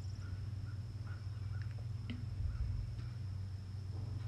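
Quiet outdoor background: a steady low hum, a faint steady high-pitched tone, and scattered faint short chirps.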